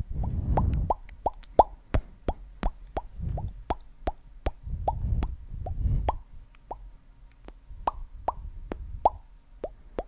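ASMR mouth popping noises made close to the microphone: a quick, irregular string of short pops, about three a second, each with a quick upward pitch. Patches of low muffled rumble sit under them at the start and again around the middle.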